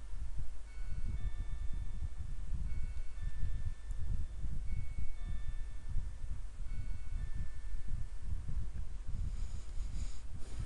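Scattered faint ringing tones at several different pitches, like chimes, over a steady low rumble.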